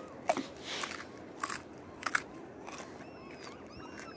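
A man chewing a raw carrot close to the microphone: about six crisp crunches spaced roughly half a second to a second apart.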